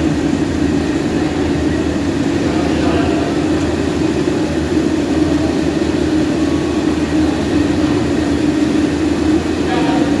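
A loud, steady mechanical drone with a strong low hum that runs unbroken, with voices faint beneath it.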